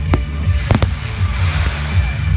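Fireworks going off: a sharp bang at the start and two more in quick succession a little past halfway, over loud music with a heavy bass beat.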